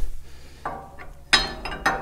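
Steel parts clinking together as a homemade steel drawbar roller stop is set into place on a Farmall Super M's drawbar: a few short metallic clinks, the sharpest about a second and a half in.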